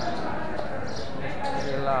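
Indistinct background chatter of men's voices in a covered market hall, with a clearer voice rising near the end.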